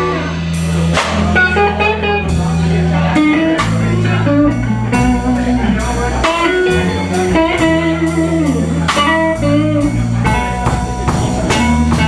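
Live blues trio jamming: electric guitar playing a lead line with bent notes over sustained electric bass notes and a Tama drum kit keeping a steady beat.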